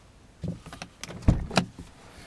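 A few light clicks and one dull low thump, about a second and a quarter in, made by handling inside a car's cabin.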